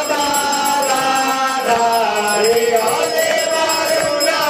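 A Hindu aarti hymn being sung as chant-like devotional music, one melodic line moving continuously.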